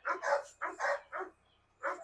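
A dog barking: a rapid series of short barks.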